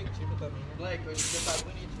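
Aerosol spray-paint can releasing one short burst of hiss, about half a second long, a little past the middle.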